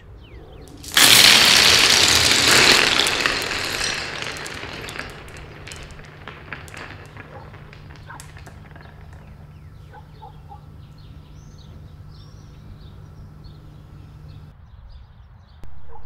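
Glass marbles hitting a stone-tiled floor. A sudden loud clatter about a second in fades over a few seconds into scattered clicks as the marbles roll and settle. A low steady hum runs underneath and stops near the end.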